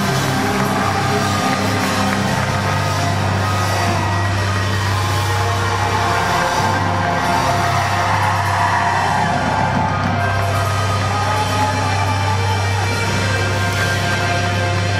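A progressive rock band playing live, loud and full over a steady low bass note, heard from within the audience.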